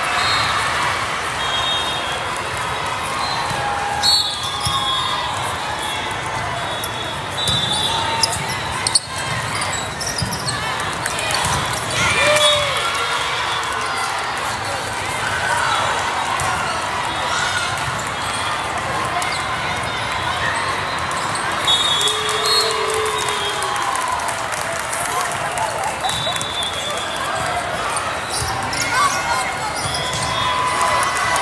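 Volleyball play in a large echoing hall: a steady din of many voices and shouted calls, with the ball being hit and bounced a few times and short high squeaks now and then from the court.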